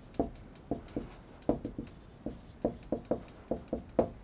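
Dry-erase marker writing on a whiteboard: a quick run of short, irregular strokes as letters and numbers are drawn.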